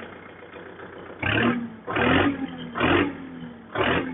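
Kubota MU4501 tractor's four-cylinder diesel engine idling and revved in four short blips about a second apart, each dropping back to idle.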